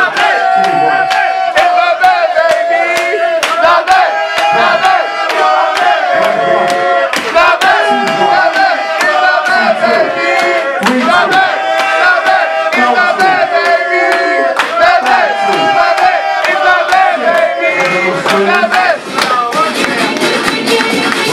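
A crowd cheering and shouting loudly, with voices chanting in long, held calls over a regular beat of sharp strikes.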